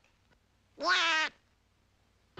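A single short, nasal cartoon duck voice saying "yeah", about half a second long and a little under a second in.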